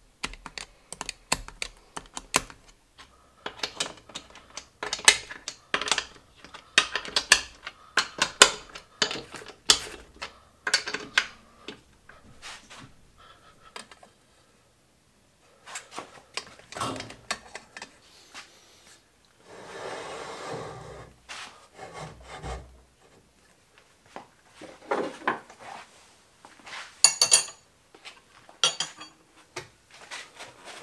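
Irregular metallic clicks, taps and clatter of a wrench and hand tools working on the parts of an antique Rottler cylinder boring bar, with a short scraping rub a little past the middle.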